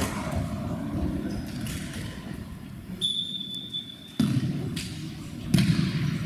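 Indoor futsal match sounds: ball thuds and players' footfalls over a rumbling sports-hall background, with a steady high-pitched tone lasting about a second about halfway through.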